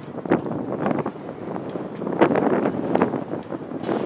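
Wind buffeting the camera microphone in irregular gusts.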